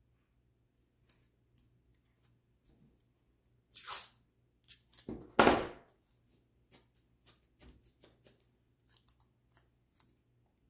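Masking tape being pulled off the roll and torn: a short noisy burst about four seconds in and a louder, longer one just past five seconds. Light clicks and crinkles follow as the tape strips are handled and pressed onto paper.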